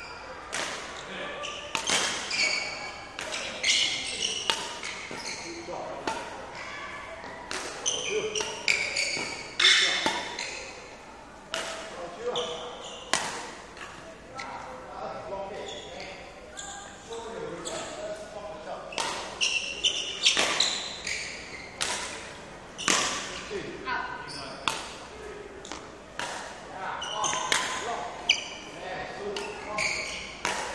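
Badminton rally sounds on an indoor court: sharp racket-on-shuttlecock hits and feet landing every second or so, with short high sneaker squeaks on the court floor, echoing in a large hall.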